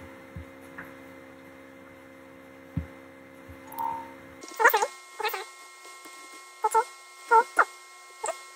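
A low steady hum, then, from about the middle on, a few short high-pitched whines from an animal, coming in two little clusters.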